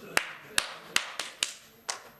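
About six sharp, separate clicks or taps at uneven spacing, each short with a brief ring after it.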